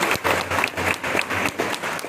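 Audience applauding: many hands clapping, a dense run of separate claps.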